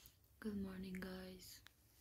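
A woman's short wordless vocal sound, like a hum, on one steady, slightly falling note lasting about a second, beginning about half a second in.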